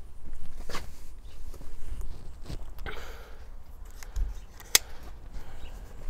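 Handling sounds around a plastic bucket of potatoes on a digital platform scale: a few scattered knocks and clicks, the sharpest about three-quarters of the way in, with footsteps on paving and a brief rustle near the middle.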